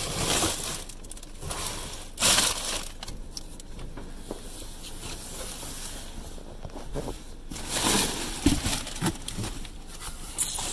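Cardboard boxes and plastic packaging being shifted and crinkled by hand while rummaging through a dumpster, in three louder bursts of rustling with a few knocks between.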